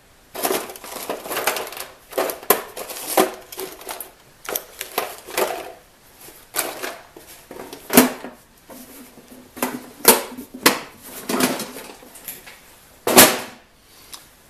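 Rummaging by hand through a tray and box of small rotary-tool bits and accessories: irregular clicks, rattles and rustles of small hard items and plastic, with one louder knock near the end.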